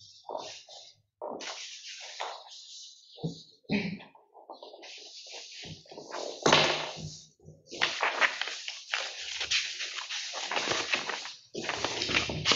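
Sheets of paper rustling and being turned over as several people leaf through documents, in irregular bursts, the loudest about six and a half seconds in.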